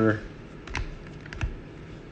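A few short, light clicks and taps of rigid plastic trading-card holders (toploaders) knocking against one another as they are picked up and set down on a stack.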